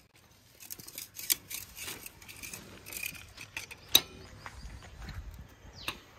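A thin metal rod scraping and picking packed dirt out of the plug recess on an excavator's track final drive hub. It makes a run of light, uneven scratches and ticks, with one sharp metallic click about four seconds in.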